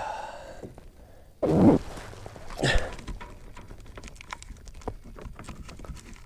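Scattered light taps and knocks of a largemouth bass being handled and laid on a measuring board on a plastic kayak deck. Two short vocal sounds from the angler, grunts or breaths, come about one and a half and two and a half seconds in.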